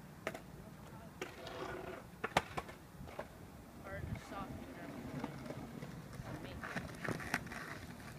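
Faint voices with a few sharp clicks and knocks scattered through, the loudest a quick double knock about two and a half seconds in and another pair near the end.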